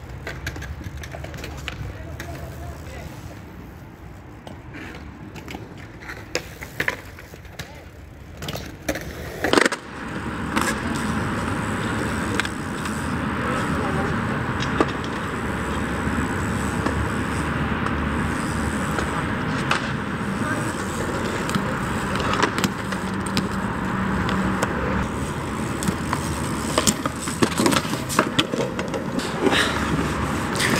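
BMX bike tyres rolling on skatepark concrete, with rattles and knocks from the bike. A sharp knock comes about ten seconds in, and after it the rolling noise is louder and steady.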